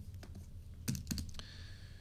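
A few light taps on a computer keyboard, with a quick cluster of keystrokes about a second in.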